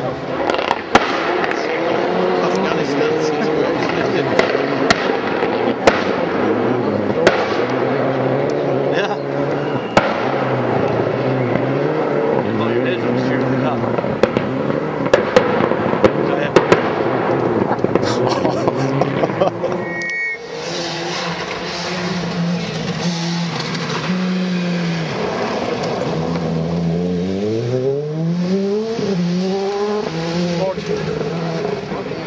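Rally car engine on a forest stage, with many sharp pops and bangs over the first two-thirds. After a sudden break, an engine climbs in rising steps near the end as it accelerates through the gears.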